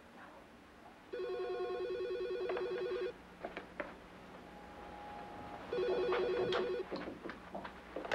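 A telephone ringing twice, each ring a fast warbling trill: the first lasts about two seconds, the second is shorter and stops abruptly. Light clicks and knocks come between and after the rings.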